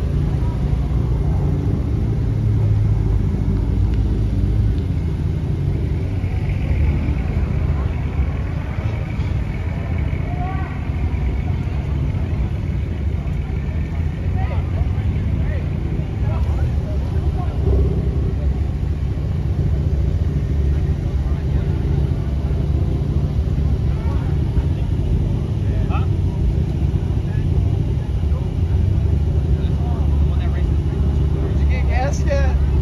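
Car engines idling, a steady low drone, with people talking in the background.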